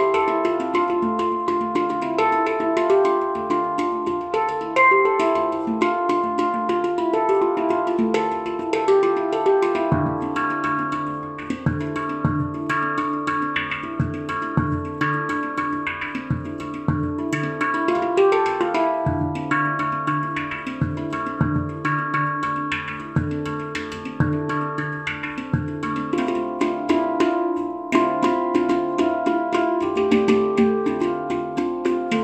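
A steel handpan played with fingers and hands: a fast rhythmic beat of ringing pitched notes mixed with sharp taps, with a deep low note sounding often from about ten seconds in.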